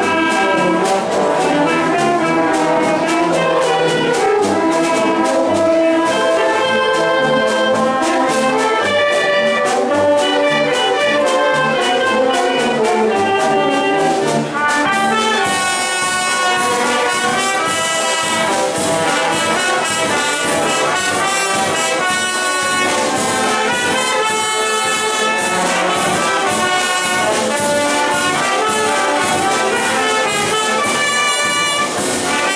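Village wind band of clarinets, saxophones, trumpets, trombones and sousaphones playing a piece together over a steady beat. About halfway through the sound grows brighter and fuller.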